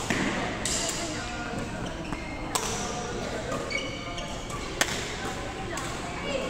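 Badminton rackets striking a shuttlecock in a doubles rally: three sharp hits, about two seconds apart, over background chatter.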